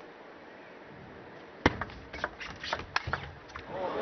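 Table tennis rally: the plastic ball clicks sharply off rackets and table, starting with a crisp hit about a second and a half in and running on as a quick, irregular series of knocks.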